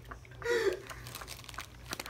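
Plastic snack wrapper crinkling in short, scattered crackles, with a brief voice sound about half a second in.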